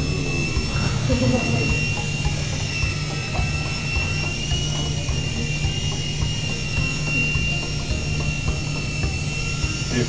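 Small infrared-controlled toy helicopter in flight: its electric rotor motor gives a steady high whine that wavers slightly in pitch, over a low hum.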